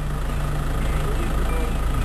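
A vehicle engine running steadily with an even, low drone.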